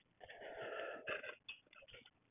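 Faint sounds of a man drinking water from a stainless steel tumbler: a drawn-out breathy sip, then a few short swallows just after a second in.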